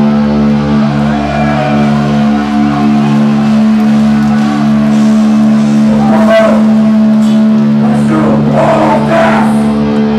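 Heavy metal band live: a distorted electric guitar chord held and left ringing, with the crowd shouting and cheering from about six seconds in.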